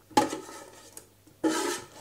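A metal ice-cream scoop scraping around a mixing bowl, gathering the last of a minced offal mixture, with one short, rasping scrape about a second and a half in.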